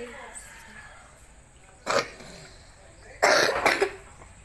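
Coughing: one short cough about two seconds in, then a longer, louder burst of coughing near the end.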